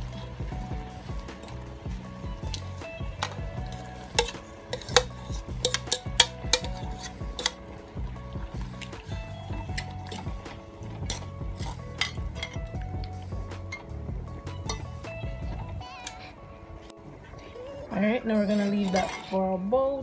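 A utensil clinking and scraping against a cooking pot as barbecue sauce is stirred in, with a run of sharp clinks between about four and eight seconds in. Background music plays underneath and drops away about three-quarters of the way through.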